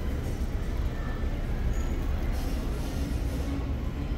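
Steady low rumble of warehouse-store background noise, with no distinct event standing out.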